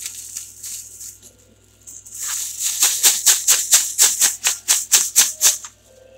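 Thin plastic packaging crinkling as it is handled, then shaken in quick, even strokes, about four crackling rustles a second for some three seconds, stopping shortly before the end.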